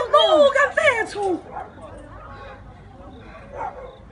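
A run of loud, high-pitched cries in the first second and a half, several of them sharply falling in pitch, followed by faint scattered sounds.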